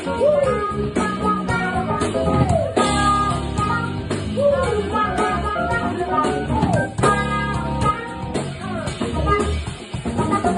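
Live jazz-funk band playing a groove: electric bass guitar and drum kit under keyboard, with a melodic line that bends up and down in a phrase recurring about every four seconds.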